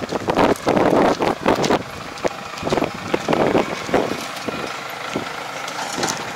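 Kubota 44 hp tractor's diesel engine running as the tractor drives along a dirt track toward and close past the listener. The sound surges unevenly through the first four seconds, then settles steadier.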